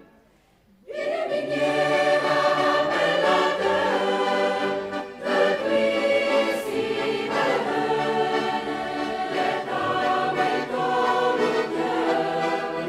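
A choir singing. It is silent for the first second, as between two phrases, then the voices come back in together and hold long sustained chords.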